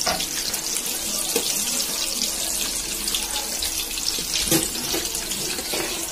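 Fish pieces sizzling steadily in hot oil in a steel pan, with a few clicks of a metal slotted spoon against the pan as the fish is turned, the loudest about four and a half seconds in.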